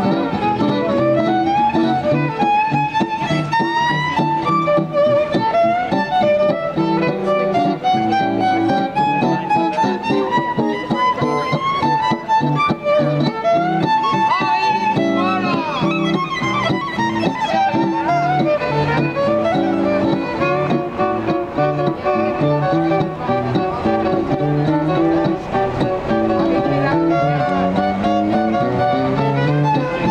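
Violin and acoustic guitar playing together: the violin carries a quick melody with pitch slides around the middle, over the guitar's steady strummed chords.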